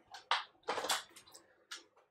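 Hands handling loose plastic and mesh parts at the top of a PC case, making a few short, soft scrapes and rustles.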